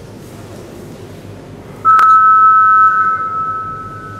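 Weightlifting attempt clock's 30-seconds-remaining warning signal: a loud electronic beep of two close steady tones, starting about two seconds in with a click. It is held for about a second, then fades away over the next second.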